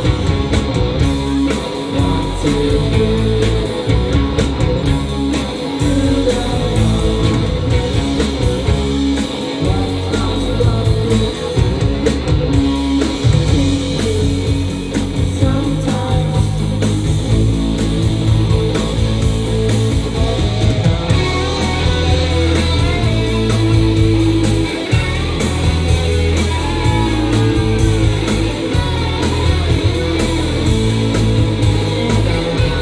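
Live rock band playing loud and steady: two electric guitars, bass guitar and a Ludwig drum kit with steady cymbal strokes.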